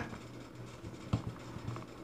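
Faint handling of a rugged plastic-and-rubber phone case being pressed and folded onto a phone, with one small sharp click a little past halfway.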